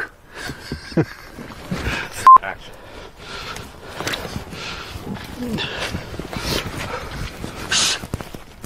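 Soft rustling and breathing from people moving through forest brush, after a brief laugh. About two seconds in comes one very short, loud, high beep.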